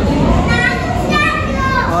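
A child's high-pitched voice, talking or calling out, starting about half a second in, over steady low background noise.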